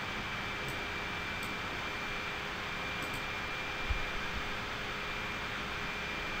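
Steady background hiss and hum with a thin, steady high-pitched tone. A few faint clicks come in the first three seconds, and a small low thump comes just before four seconds in.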